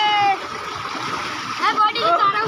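A child's long, high-pitched, slightly falling cry that ends about a third of a second in, over the steady rush of water pouring from a pipe into a concrete tank. Short high children's voices break in near the end.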